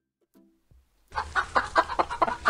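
A hen clucking: a quick run of short, sharp clucks, several a second, that begins about a second in.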